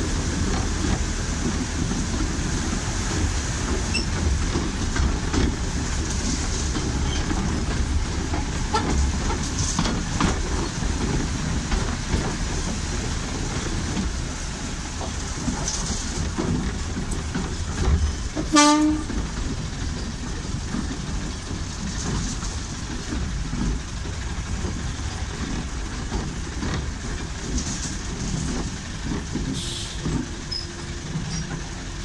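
Narrow-gauge train in motion: a steady rumble and rattle of the carriage running on 2 ft gauge track behind a Baguley-Drewry diesel locomotive. There is one short horn toot about two-thirds of the way through.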